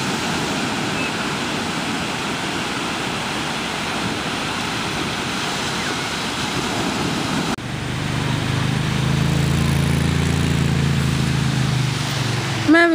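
Ocean surf breaking on a beach, a steady rushing noise. About two-thirds of the way through the sound changes abruptly, and a steady low hum joins the surf.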